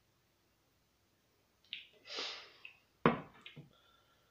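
A man breathes out sharply after a swallow of beer. About three seconds in, his heavy glass beer mug is set down on the wooden table with a sharp knock, followed by faint shuffling.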